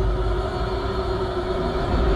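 Background score music holding a sustained low drone under a steady tone, without a beat.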